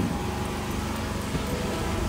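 Steady background din of a fish market hall: a low, even rumble with no distinct events standing out.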